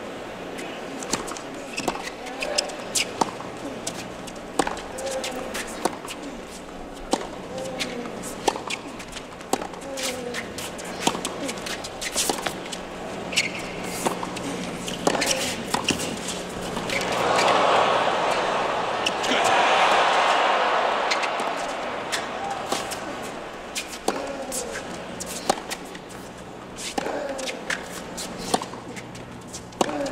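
A tennis rally on a hard court: a string of sharp racket strikes and ball bounces. The crowd cheers loudly for a few seconds about halfway through, and then the single pops start again.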